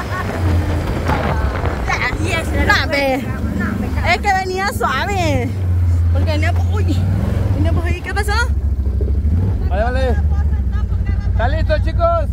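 Pickup truck's engine and tyres making a steady low rumble on a dirt track, heard from the open bed. Bursts of voices and laughter from the riders come over it.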